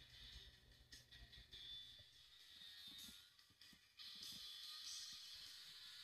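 Very faint music given out by a speaker cabinet's panel, driven by a tactile exciter mounted on its back panel; the empty cabinet is lined with sound-deadener pads and spray-on coating.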